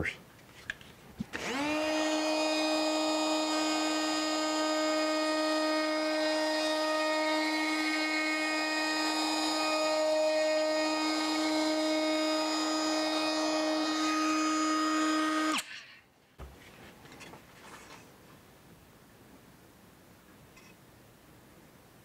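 DeWalt 20V brushless cordless palm router spinning up, then running at a steady high whine while it cuts a quarter-inch round-over along the inside edge of a wooden handle cutout. It shuts off and winds down after about fifteen seconds.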